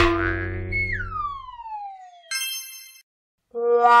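Cartoon sound effects for a kicked soccer ball: a ringing boing that dies away over about a second and a half, then a whistle gliding steadily down in pitch, cut off by a short bright ding about two and a half seconds in. A voice shouts just before the end.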